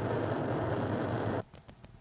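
Steady, noisy rumble with a low hum from camcorder footage audio played back off the editing timeline. It stops abruptly about one and a half seconds in, when playback is halted.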